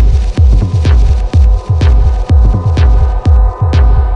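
Techno track playing loud through PA speakers: a heavy four-on-the-floor kick drum about twice a second, with sharper percussion hits on top and a steady held synth drone.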